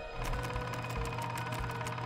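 Film projector running, a rapid, even mechanical clatter over a steady hum, as a countdown leader plays.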